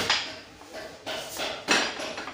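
Metal knocks and clinks as the tubular steel frame of a chair is handled and fitted together during assembly. There are three sharp knocks with a short ring: one at the start, a lighter one past a second in, and the loudest near the end.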